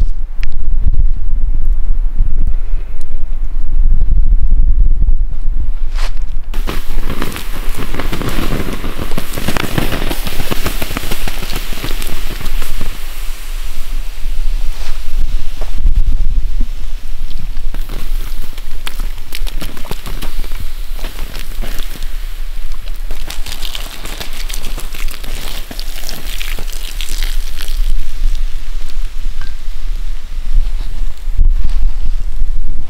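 Campfire embers being doused with water: after a few seconds of scraping and thuds among the coals, a loud hiss of steam rises from about six seconds in and goes on to the end. A low rumble of wind or handling on the microphone runs underneath.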